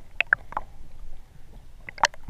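Underwater sound picked up through a camera housing during a scuba dive: a few short clicks in the first half second, then a faint low rumble between the diver's breaths.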